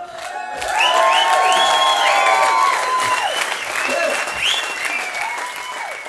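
Audience applauding and cheering, with long rising and falling whoops over the clapping; it gradually dies away towards the end.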